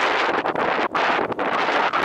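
Wind buffeting the camera microphone: a loud, even rush with two brief dips, cutting off abruptly at the end.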